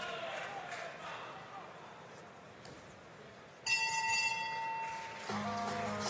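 Boxing ring bell struck about three and a half seconds in, ringing for just over a second: the bell ending the round.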